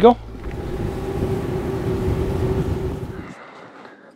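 Boat outboard motor running under way: a steady engine hum over rushing wind and water noise, cutting off suddenly about three seconds in.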